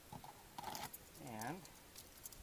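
Brief handling noise, a short scuff with a few faint clicks, from a hand on the plastic steering wheel and column trim, followed by a man saying a single word.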